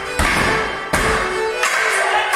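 Morris dancers' wooden sticks clashing together, two sharp clacks, the first just after the start and the second about a second in, over a live folk dance tune.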